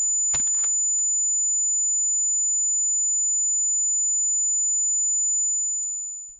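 A single steady, high-pitched ringing tone, the ear-ringing effect left by a pistol shot, fading out near the end. A brief faint knock comes shortly after it starts.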